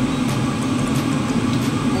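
Steady low hum and rumble of a kitchen range-hood fan running, with faint light clicks over it.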